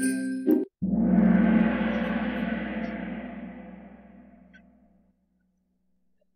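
Kahoot quiz game-start sound effect: the lobby music cuts off, then one struck, ringing sound sets in about a second in and dies away over about four seconds.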